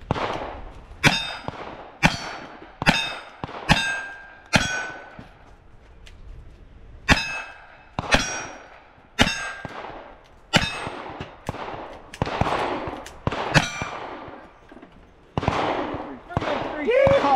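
Revolver shots fired one after another at steel plate targets, most followed by the ring of a struck plate, about fifteen in all with a pause of a couple of seconds near the middle.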